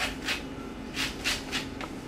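Orange peel being scraped on a handheld citrus grater: short scraping strokes, two quick ones, a pause, then three more as the zest is grated off.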